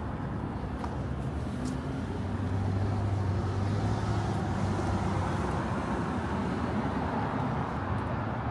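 Light city-street traffic: the steady run of car engines and tyres. A vehicle's engine hum grows a little louder about two seconds in and holds for a few seconds.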